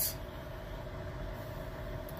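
Steady low hum of a semi truck idling, heard from inside its cab.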